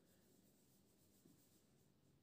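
Near silence: room tone with faint sounds of a marker working on a whiteboard.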